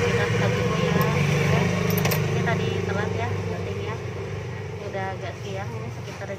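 A motor vehicle engine running with a steady low hum, growing fainter over the last few seconds, with voices in the background.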